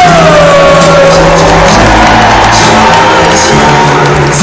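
Live band music played loud over the arena PA, a long note gliding down in pitch over the first second and a half, with the crowd cheering.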